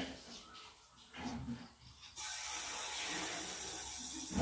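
A steady hiss that cuts in suddenly about two seconds in and holds level, after a quieter stretch that opens with a short click.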